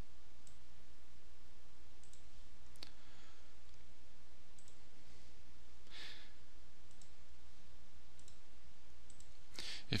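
Faint computer mouse clicks, about a dozen, scattered irregularly over a steady low hum.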